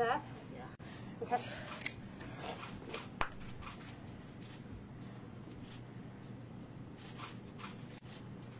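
Faint rustling and a few light clicks of gloved hands and tools working loose papers inside a copper box, over a steady low room hum. A couple of brief murmured words come near the start.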